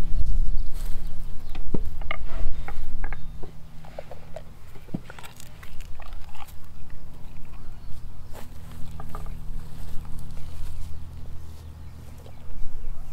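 A Doberman's mouth sounds: short wet clicks of licking and smacking its lips, coming in scattered runs, over a steady low hum.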